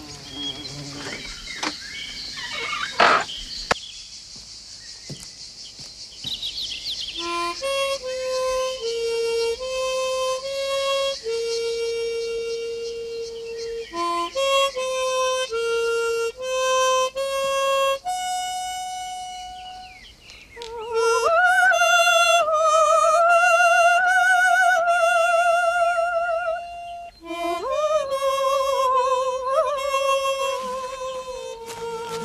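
Harmonica playing a slow melody of long held notes, coming in about seven seconds in over a high, steady insect buzz; in the second half the notes waver with a wide vibrato.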